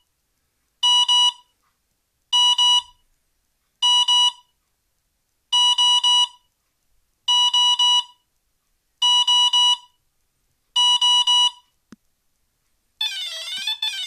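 Energ Pro 40A brushless ESC in programming mode sounding its beep pattern for the timing-setup menu item through the motor: seven short double beeps, about one every 1.7 seconds. Near the end a warbling rising-and-falling tone pattern starts, the signal for the next menu item, soft acceleration startup.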